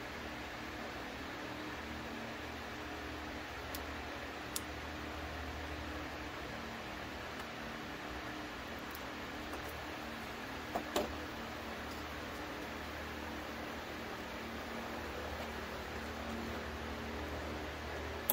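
Canon Pixma PRO-200 inkjet printer starting up after power-on: a low steady motor hum as the print-head carriage initializes, with a few faint clicks and a couple of short knocks about eleven seconds in.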